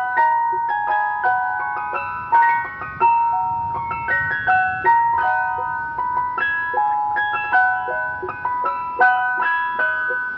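Ice cream van chime playing a tinkly jingle: a melody of bell-like notes, each striking sharply and fading.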